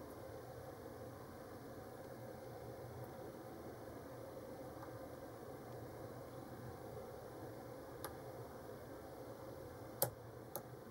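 Faint steady hiss, with a single soft click about eight seconds in, as a hook pick and tension wrench work the pin tumblers of a brass Cocraft 400 padlock.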